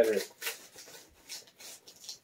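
A knife slicing through the packing tape and cardboard of a mailing box: several short scraping cuts.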